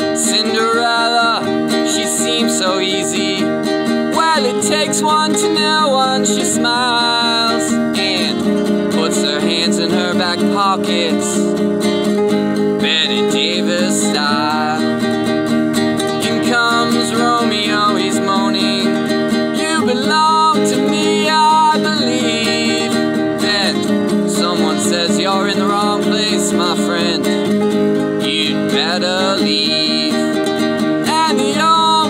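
A nylon-string classical guitar played steadily as song accompaniment, with a man's voice singing over it at times.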